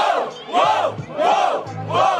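A crowd shouting "oh!" together in rhythm, about two shouts a second, each rising then falling in pitch, with music and a low bass underneath.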